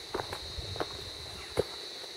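Footsteps on a stony path and a walking stick knocking on the rocks, struck to scare off snakes: a few sharp knocks, the loudest about one and a half seconds in, over a steady high-pitched whine.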